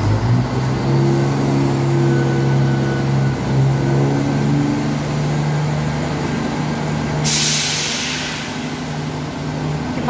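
East Midlands Railway Class 170 Turbostar diesel multiple unit departing from the platform, its underfloor diesel engines running with a steady low note that steps up in pitch about three and a half seconds in. A loud hiss of air starts about seven seconds in and carries on.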